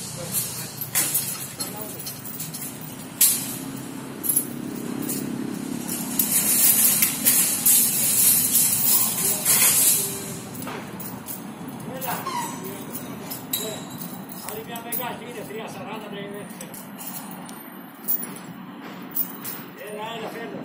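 Construction-site noise: a steady low machinery rumble with sharp metal knocks and clinks in the first few seconds and a loud hiss from about six to ten seconds in. Workers' voices can be heard in the second half.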